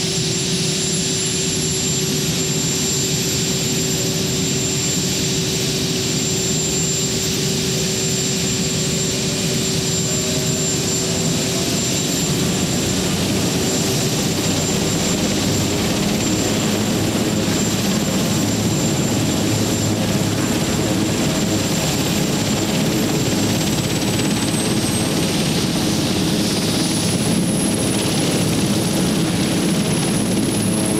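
Sikorsky VH-3 Sea King helicopter (Marine One) running on the ground with its main rotor turning: a steady, loud turbine whine over the rotor noise, the high whine climbing in pitch near the end.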